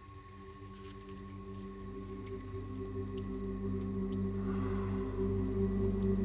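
A low, steady drone of several held tones on one pitch, swelling gradually louder throughout.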